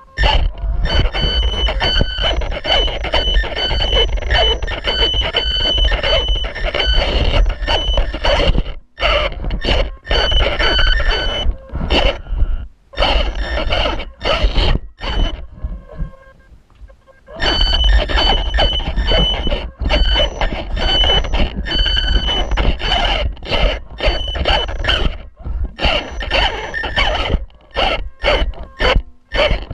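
Losi 1/18 mini rock crawler's electric motor and gearbox whining under throttle, cutting in and out in bursts as the truck creeps over rocks, with knocks and scrapes of the tyres and chassis on stone. There is a longer pause of about a second in the middle.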